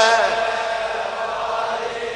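A man's chanted note of a Shia religious lament through a microphone in a large hall, fading out shortly in and followed by a softer, blurred wash of echo and crowd voices.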